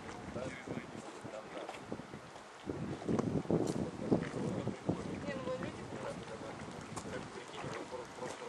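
Wind buffeting the microphone in gusts, louder for a second or so near the middle, with indistinct voices in the background.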